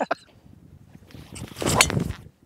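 A golf driver swishing through the downswing, then striking a teed-up ball with a sharp crack near the end.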